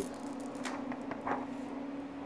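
Faint crackle of a clear Mylar cover sheet being peeled off a photopolymer plate, a few soft ticks, over the steady hum of the processor's dryer fans.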